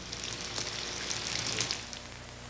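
Soft, steady hiss with faint crackle and a low hum under it, dropping lower at the end.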